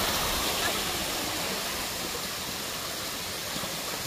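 A mountain stream running: a steady, even rush of water.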